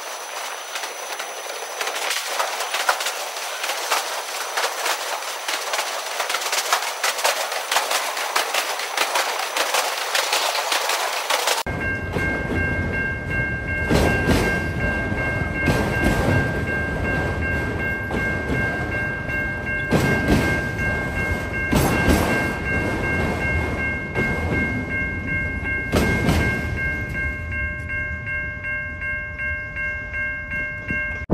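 Autorack freight cars rolling past with clattering wheels, the sound thin and hissy at first as if sped up. About twelve seconds in it switches abruptly to fuller sound: a locomotive's Nathan K3LA horn chord is held steadily for most of the rest, over wheel clicks every couple of seconds.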